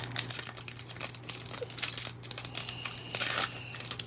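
Foil wrapper of a 2021 Topps Series 1 baseball card pack crinkling and tearing as it is ripped open by hand: a string of quick, irregular crackles.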